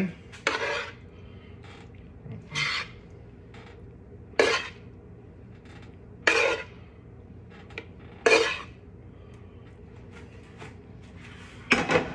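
Metal spoon scraping and knocking against cookware as cooked ground beef is spooned into a bowl of rice: five short strokes about two seconds apart.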